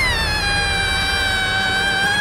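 A woman's long, high-pitched scream of fright, held on nearly one pitch after a quick rise and slight dip.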